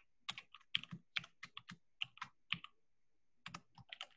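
Computer keyboard being typed on: quick runs of key clicks, with a short pause about three-quarters of the way through before the typing resumes.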